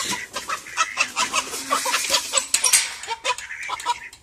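Poultry calling: chickens clucking and squawking with geese honking, among rapid short clatters from the wire cage being handled.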